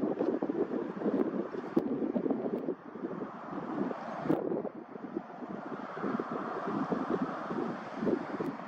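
Wind buffeting the microphone: a rushing noise that rises and falls unevenly, with a brief lull about three seconds in.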